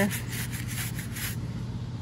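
Stiff paintbrush scrubbing black paint into the carved cracks of a foam panel: a run of short, scratchy strokes over the first second and a half. A steady hum from an air conditioner runs underneath.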